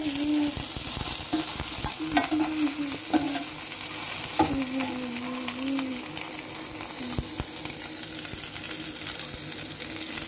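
Chopped onions, cabbage and peas sizzling in hot oil in a pan, stirred with a metal spoon that clicks and scrapes against the pan every second or so.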